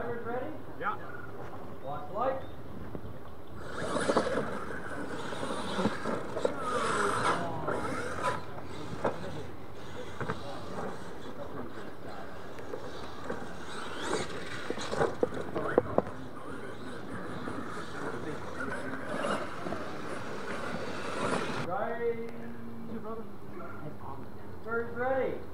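Radio-controlled scale monster truck driving on a dirt track, heard under a steady hiss with scattered clicks, and people talking in the background.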